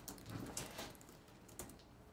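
Faint, scattered light clicks and taps of hands handling stenciling supplies on a wooden worktable.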